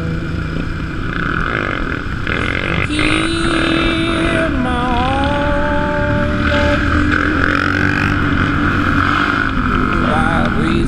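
Supermoto motorcycle engine running under way, heard close up from the bike with wind noise. Its pitch steps up about three seconds in, then drops and climbs again as the rider shifts and accelerates.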